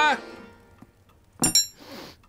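A single bright metallic clink about one and a half seconds in, as a knife and fork are set down on a table beside a bowl, followed by a short breathy noise. The end of a spoken word is heard at the very start.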